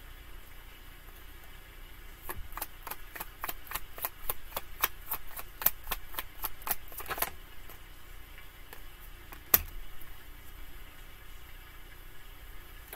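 A tarot deck being shuffled by hand: a run of quick card clicks, about five a second, lasting some five seconds, then one sharp single tap a couple of seconds later.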